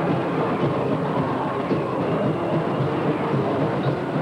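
High school marching band playing during its entrance onto the field: a loud, dense, steady wash of sound with little in the high range.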